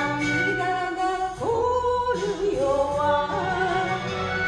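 A woman singing an enka melody over a karaoke backing track, sliding up into long held notes.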